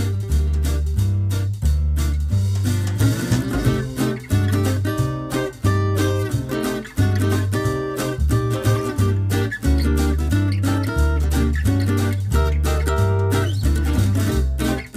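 Background music: plucked acoustic guitar over a bass line that steps from note to note at a bouncy, even pace.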